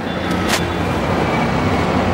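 Motor vehicle engine running, a steady low drone with road noise, and one sharp click about half a second in.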